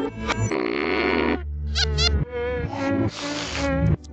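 Cartoon music score with comic sound effects: a hiss about half a second in, quick warbling sliding tones about two seconds in, and another hiss near the end.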